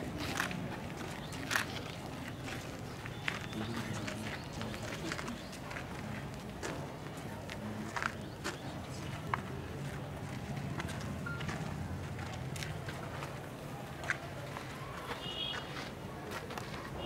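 Indistinct murmur of a gathered crowd, with scattered short clicks and taps throughout and a brief high chirp near the end.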